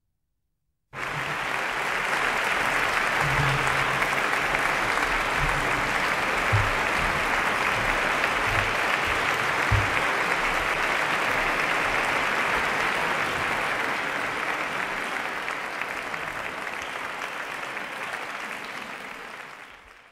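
Large concert audience applauding, a dense steady clapping that starts abruptly about a second in and dies away over the last few seconds.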